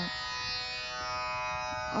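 Soft instrumental background music in an Indian classical style: a steady drone of several held notes.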